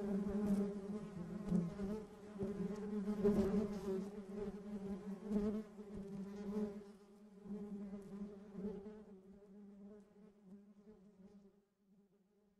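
Honeybees buzzing: a steady hum pitched near 200 Hz with overtones, swelling louder now and then as bees pass close. The buzz fades away over the last few seconds.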